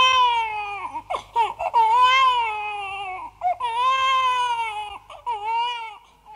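A baby crying: about four long, wavering wails, with short catching breaths between them.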